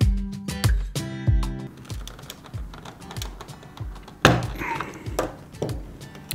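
Background music with a steady beat. About four seconds in, a sharp plastic click, then a lighter one a second later, as the chrome-plated vent trim ring is pushed free of the plastic dash vent bezel.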